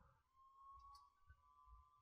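Near silence: room tone, with a faint thin steady tone.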